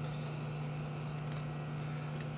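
Faint rustling and light tapping of paper raffle tickets being mixed in a container, over a steady low electrical hum.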